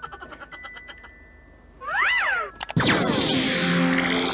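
Edited-in cartoon sound effects over an iPhone ringtone. A rhythmic chiming fades over the first second or so. About two seconds in comes a short meow-like glide that rises and falls, then from about three seconds a loud noisy effect with falling tones.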